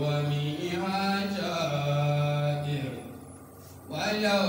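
A man's voice reciting the Qur'an in Arabic in a chanted, melodic style, holding long notes that glide between pitches. The voice pauses for about a second near the end, then picks up again.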